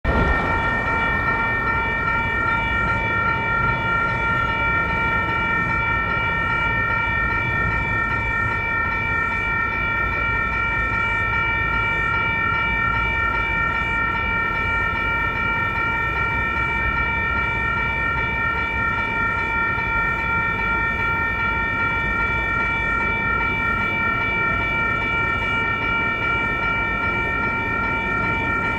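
Railway level crossing warning bells ringing steadily, their bell-like tones held without a break, over a low rumble.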